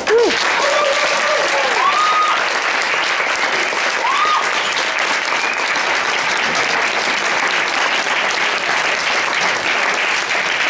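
Audience applauding steadily right after a song ends, with a few whoops rising and falling in pitch in the first few seconds.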